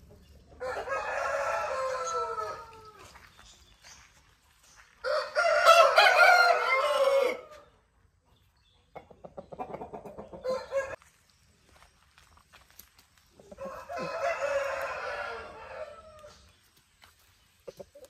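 Aseel roosters crowing: four crows a few seconds apart, the second one the loudest and the third rougher and weaker.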